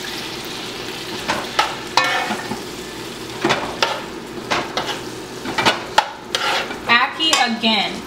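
Ackee being tipped into a metal pot of frying tofu, peas and corn and stirred with a metal spoon: irregular scrapes and clicks of the spoon against the pot over a faint sizzle, busier in the second half.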